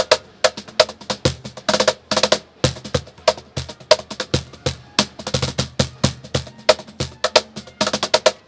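Remo Dorado cajon with a glued fixed wooden front and internal snares, played by hand in a quick, steady groove of about five strikes a second. Deep bass tones from the middle of the front plate mix with sharper slaps toward the edge that set the snares rattling.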